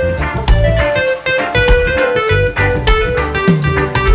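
Live reggae band playing an instrumental passage with no vocals: a guitar picks a single-note melody over bass and drums keeping a steady beat.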